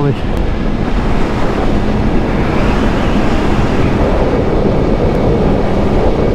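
Wind rushing over the microphone of a Yamaha MT-10 SP motorcycle rider at speed, a steady loud roar, with a faint even engine tone underneath.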